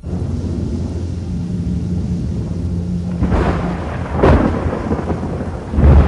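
Thunderstorm: steady rain with a low rolling rumble of thunder, swelling into louder thunderclaps about three to four seconds in and again near the end.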